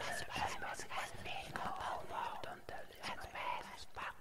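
Whispering voices, breathy, with words that can't be made out.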